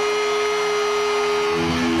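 Steady, sustained electric guitar drone from the stage amplifiers, several held tones ringing unchanged, over a constant crowd noise.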